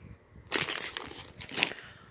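Packaging crinkling and rustling in a few short bursts, beginning about half a second in, as a hand handles a clear plastic bag and rummages through shredded paper filler in a cardboard shipping box.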